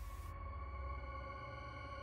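Faint, steady electronic drone of several held tones sounding together: a quiet ambient music bed.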